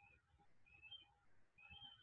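Near silence: room tone with a few faint, short, high chirps, some rising slightly in pitch.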